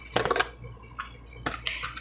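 A deck of tarot cards being handled and drawn: a few light clicks and taps as cards slide off the deck and are laid on a marble tabletop.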